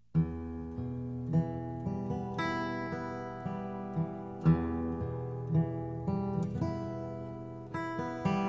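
Instrumental folk intro on strummed acoustic guitar, cutting in sharply a moment in after a near-silent gap between tracks.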